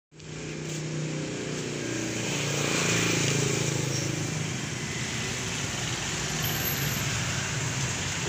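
A motor vehicle engine running with a low, steady hum over constant background noise; the hum is clearest in the first few seconds.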